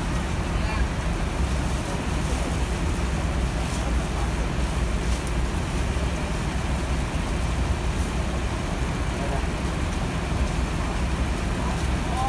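Steady rain falling on a flooded bus terminal yard: a continuous even hiss with a low rumble underneath.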